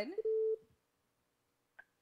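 Telephone line tone: one steady beep of under half a second as the call connects, then silence and a short click just before the caller's line opens.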